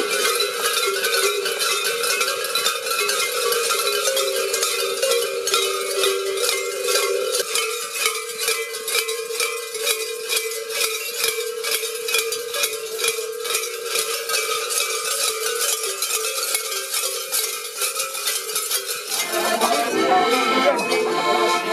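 Large cowbells hung at the waist of carnival mask-wearers, clanging continuously and rhythmically as they walk. About a second before the end the bells give way to an accordion playing.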